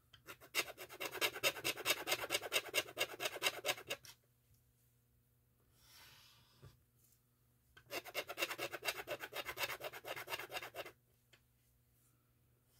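A plastic craft tool's edge rubbed quickly back and forth on a small ink pad to load it with black ink: two runs of fast scratchy strokes, each about three seconds long, with a quiet gap between.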